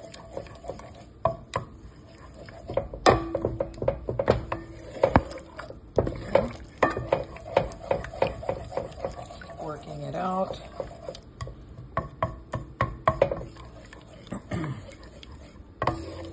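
A spoon stirring a thick milk-and-flour sauce in a pan, knocking and scraping against the pan in quick, irregular clacks as the flour lumps are worked out.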